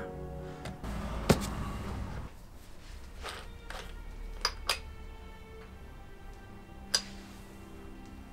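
Ice cream van chime playing a tinny melody of steady tones, faint throughout. A few sharp clicks sound over it.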